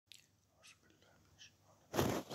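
A person whispering faintly: a few soft, short hissing syllables.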